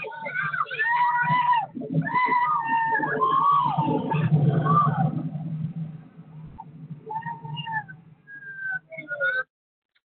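People screaming and yelling in alarm at a flash flood surging down a city street: long, high-pitched screams from several voices over a steady low rush of floodwater. The screams thin out about halfway through, a few shorter cries follow, and the sound cuts off suddenly near the end.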